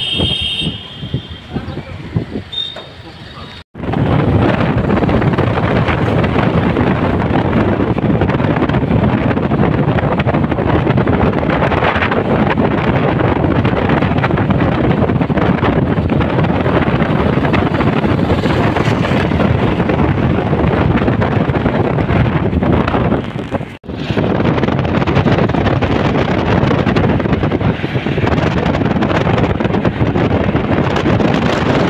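Wind rushing over the microphone with road noise from a moving car, the phone held at an open side window. Quieter street traffic for the first few seconds, then the loud, steady rush sets in suddenly, with one brief break about two-thirds of the way through.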